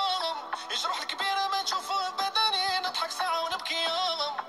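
Arabic song: a heavily processed singing voice over a music backing.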